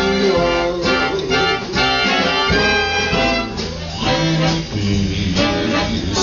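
Live swing band playing an instrumental passage with no vocals.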